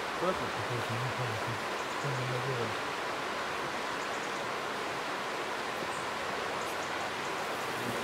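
Steady, even rushing noise, with a man's low voice murmuring briefly in the first three seconds.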